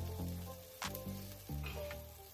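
Background music with a beat and bass notes, over the steady sizzle of an egg and bread frying in ghee on an iron tawa.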